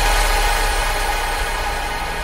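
Electronic dance music: a sustained, noisy synth wash over a low bass note, slowly fading away.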